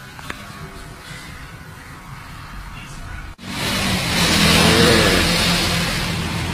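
Quiet indoor background with a single sharp click, then a sudden cut, a little over three seconds in, to louder street traffic noise with a vehicle engine running.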